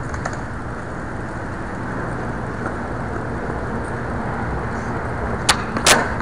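Steady low outdoor background rumble, with two sharp clicks about half a second apart near the end.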